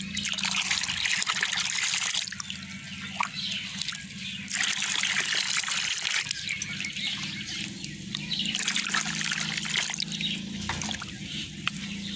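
Water poured from a steel mug into a tub of water, splashing and frothing, in three louder pours with quieter gaps: ladling the water to mix neem oil into it.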